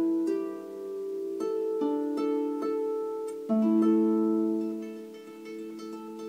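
Stoney End double-strung harp being played. The left hand plucks fifths on A, G, E and D while the right hand picks single notes on the white strings above. The plucked notes come about every half second and ring on, overlapping each other.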